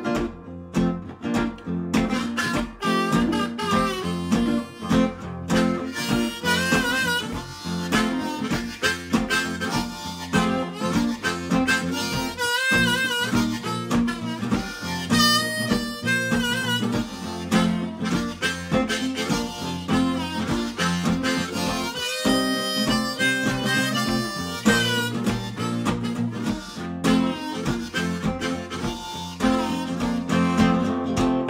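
Harmonica played in a neck rack over a steady strummed rhythm on an archtop guitar: an instrumental blues break, with the harmonica's notes wavering and bending.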